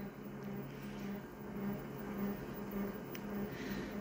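Steady low electrical hum of an office photocopier standing ready, with a faint buzz that pulses evenly. A single faint tick comes about three seconds in, from a finger tapping the copier's touchscreen.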